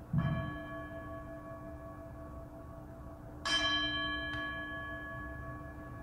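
Altar bell struck twice, about three seconds apart, the second strike louder. Each strike rings on with a long, slowly fading tone. It is rung at the consecration of the wine, marking the elevation of the chalice in the Eucharistic prayer.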